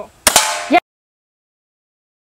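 Two quick shots from a gun about a tenth of a second apart, followed at once by a loud shout; the sound cuts off suddenly.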